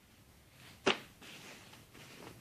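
Denim jeans being handled: one sharp flap or snap of the fabric a little under a second in, the loudest sound, then soft rustling of denim.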